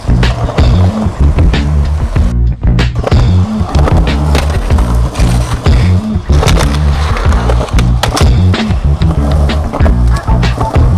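Music with a heavy stepping bassline, mixed with skateboard sounds: wheels rolling on concrete and repeated sharp clacks and knocks of the board.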